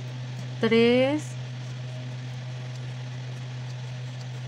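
Steady low hum, with a woman's voice briefly saying one counted word, "tres" (three), about half a second in.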